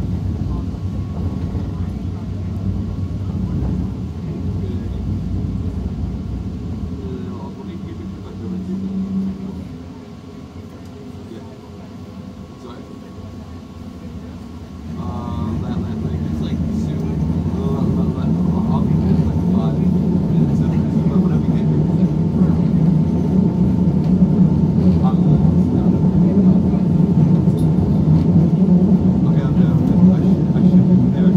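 Alstom Citadis Spirit light-rail train running along the track, heard from inside the car as a steady rumble. It goes quieter for a few seconds, then grows louder from about halfway with a steady whine over the rumble.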